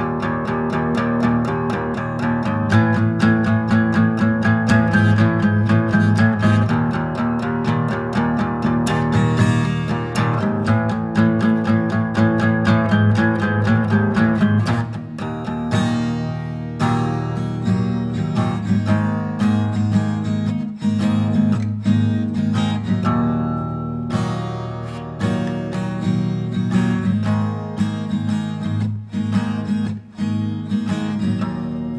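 Instrumental break in a song with no singing: guitar strummed in a steady rhythm, turning to sparser, separately picked notes about halfway through.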